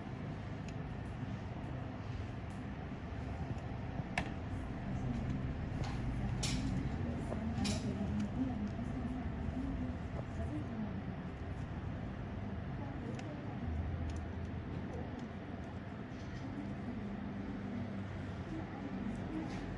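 Steady low background rumble with faint, indistinct voices, and three sharp clicks in the first half.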